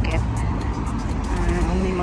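Street traffic: car engines running and cars passing at a road junction, a steady low rumble.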